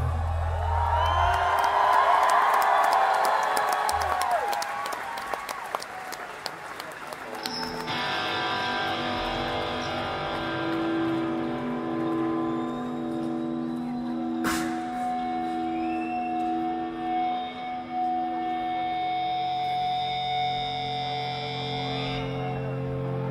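Crowd cheering and clapping between songs, dying down over the first several seconds. About eight seconds in, an electric guitar starts holding long sustained notes through effects, with a slowly pulsing tone.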